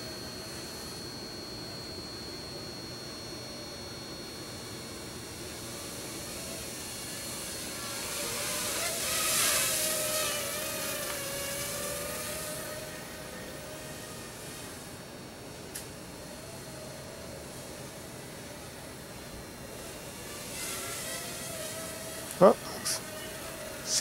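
Small Cheerson CX-30 quadcopter's motors and propellers whining steadily in flight, the pitch wavering with throttle. A hissing rush swells and fades about a third of the way in.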